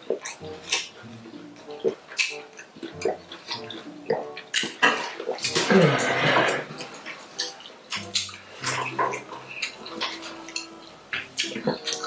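Close-up eating sounds: wet chewing, lip smacks and mouth clicks as snail, gizzard and plantain are eaten by hand, with a few short hummed "mm" sounds. A louder, noisy wet sound comes about six seconds in.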